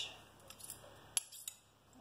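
A few light metallic clicks of metal spoons touching each other and the rim of a stainless steel mixing bowl, the sharpest a little over a second in.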